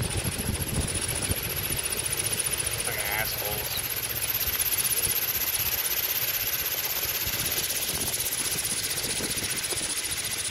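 Small motorboat's outboard motor running at speed as it crosses the anchorage, a steady drone with a pulsing high whine, over wind and water noise.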